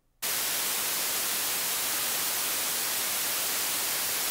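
White noise from a transistor noise generator: a steady, even hiss, strongest in the treble, that switches on abruptly about a quarter second in.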